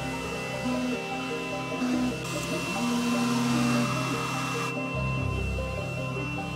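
xTool M1 desktop laser and blade cutter running, a steady whirring hiss with a thin high whine, which stops near the end. Background music plays throughout.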